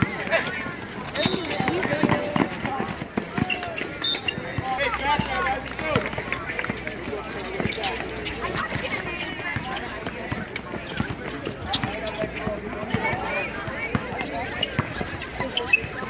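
Pickup basketball game on an outdoor asphalt court: a basketball bouncing as it is dribbled, with running footsteps. Spectators' voices talk and call out throughout.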